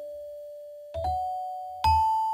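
Soft background music of slow, bell-like keyboard notes, each ringing and fading away, with a pair of notes about a second in and a higher note near the end.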